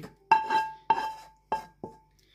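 A wooden spoon knocking against a frying pan four times as fried cherry tomatoes are scraped from one pan into another, each knock ringing briefly.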